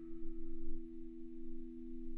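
A steady low drone of two held tones, one slightly below the other, with no change in pitch, as in a film's ambient score.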